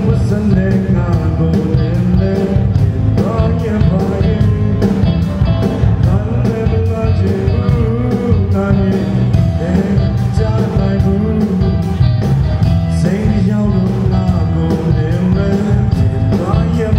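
Live band playing a song: a man singing into a microphone over electric guitar, electric bass, drum kit and keyboard, with a steady drum beat.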